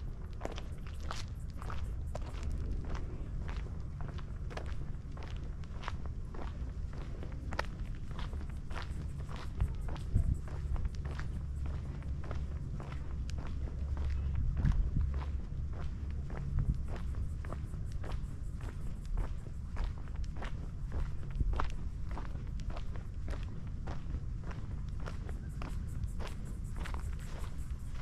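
Walking footsteps of the camera-carrier on a gritty asphalt road, about two steps a second, over a steady low rumble.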